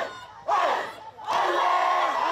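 A large group of children shouting together in unison, in two loud bursts, the second longer than the first.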